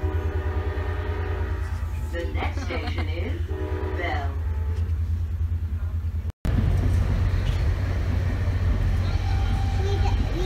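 Low, steady rumble of a commuter train coach in motion, heard from inside. A train horn sounds as a steady chord for the first couple of seconds and fades out.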